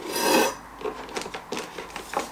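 AMD Ryzen 5 processor box being opened by hand: a scraping rasp of cardboard and packaging in the first half second, then light crinkling and small clicks of the packing.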